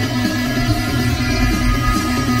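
Background music track with strummed guitar and a steady low rhythm.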